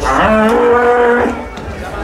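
A bull bellowing once: a loud, long low call that rises briefly at the start and then holds steady for about a second.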